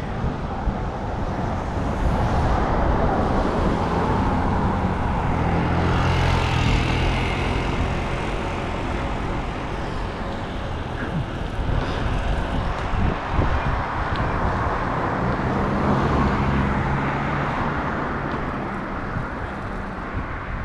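Road traffic heard from a moving bicycle on a city street: a steady rush of road and wind noise on a head-mounted camera's microphone, with the hum of passing motor vehicles swelling twice, once in the first half and again near the end.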